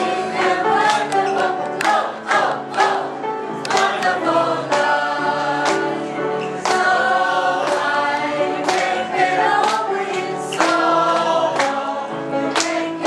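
A small group singing a gospel song together over accompanying music with a steady beat.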